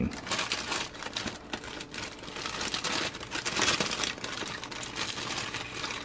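Thin clear plastic bag crinkling and rustling continuously as a plastic model-kit parts tree is handled and pulled out of it.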